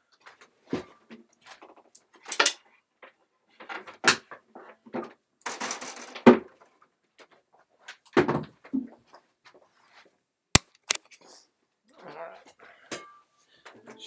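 Handling noise from a person moving about and setting down and picking up an acoustic guitar while plugging in a power cable: irregular knocks, rustles and clicks, with one sharp click about ten and a half seconds in.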